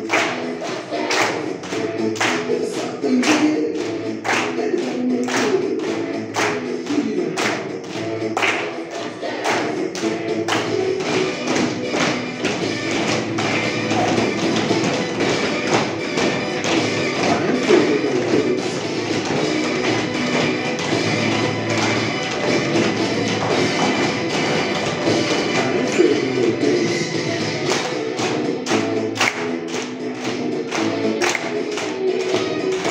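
A group of schoolchildren doing body percussion, with claps and slaps at roughly two a second, over a recorded song with singing. The strikes are crisp in the first third and again near the end, and busier and blurred together in the middle.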